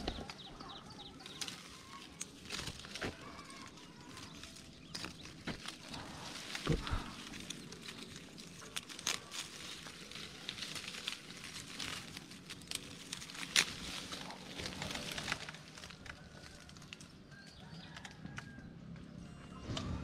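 Clove tree leaves and twigs rustling and crackling as a hand moves through the branches among the bud clusters, with irregular light clicks and a sharper snap about two-thirds of the way in.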